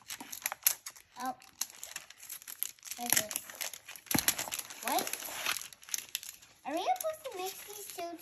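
Wrapping crinkling and tearing as a strip is peeled off a plastic toy surprise ball, a run of quick crackles. Brief child vocal sounds come in a few times.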